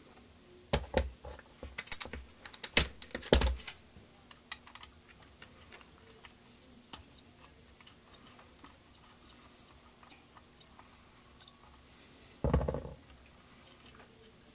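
Clicks and knocks of metal parts as a Robinair two-stage vacuum pump is taken apart by hand. There is a run of sharp clicks and knocks in the first few seconds, then one duller thump about twelve and a half seconds in.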